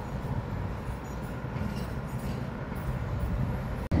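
Low, steady rumble of city street traffic. It drops out sharply for a moment near the end.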